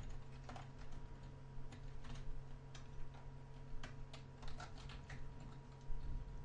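Computer keyboard typing: faint, irregular keystrokes, over a steady low hum.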